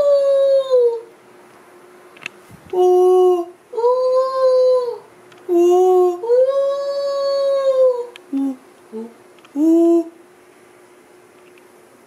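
Wind howling through an apartment: a series of drawn-out "ooh" tones that sound like a dog howl, each lasting about one to two seconds, with short pauses between them.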